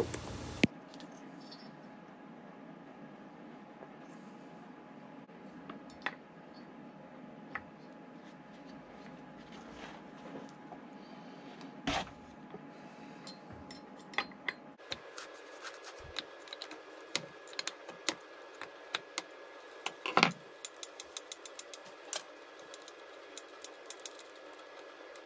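Scattered small metallic clicks and clinks of hand tools and chainsaw parts being handled during disassembly, over a faint steady background. There is a louder knock about twelve seconds in and another around twenty seconds, with the clicks coming more often in the second half.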